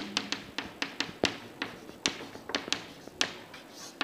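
Chalk tapping on a chalkboard as letters are written: a run of irregular sharp taps, a few a second.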